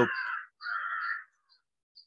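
A crow cawing twice in quick succession, both calls over within about the first second, with a small bird chirping high and briefly a few times a second throughout.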